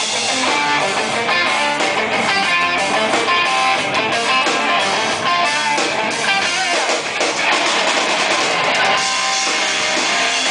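Live rock band playing an instrumental passage: electric guitars picking quick melodic lines over a drum kit, with no vocals.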